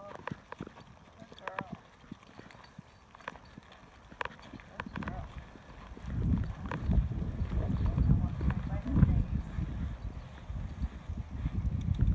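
Footsteps of people and dogs on a packed-dirt path, a scatter of light scuffs and clicks. From about halfway in, a loud low rumble of wind and handling noise on the microphone takes over.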